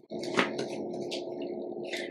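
Plastic blade base being screwed onto a personal blender cup, the threads grating steadily for about two seconds.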